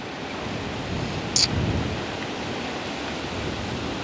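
Steady rushing outdoor background noise, with a low rumble swelling briefly about a second and a half in, just after one short sharp click.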